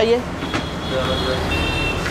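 Low rumble of passing road traffic, swelling toward the end, with faint steady high-pitched tones over it in the second half.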